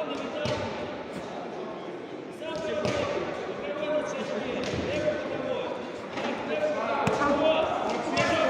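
Dull thuds of kicks and punches landing and feet hitting the mat several times during a kickboxing bout, under voices calling out from the crowd and corners, echoing in a large sports hall.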